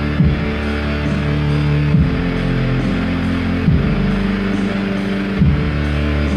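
Electronic keyboard played live through an amplifier: sustained chords held for a little under two seconds each, with the low notes shifting at each accented chord change.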